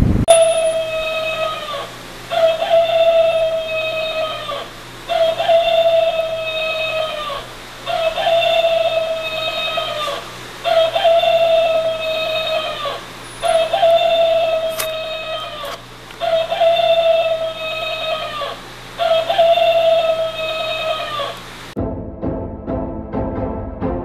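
Rooster alarm clock sounding its alarm: the same recorded crow played eight times, about every two and a half seconds, each call holding its pitch and then dropping away at the end.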